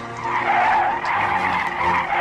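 Steady, loud rushing noise with a low drone beneath it: aircraft cockpit engine noise on a film soundtrack.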